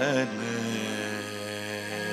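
A man's sung note with a wavering pitch ends about a third of a second in, leaving a steady held instrumental drone of several sustained tones.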